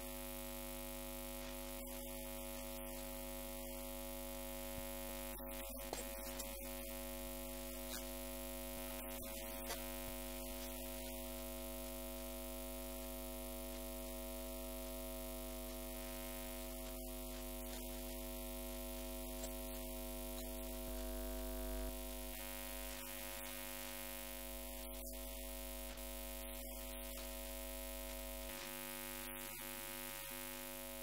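Steady electrical hum of several unchanging tones over a constant hiss.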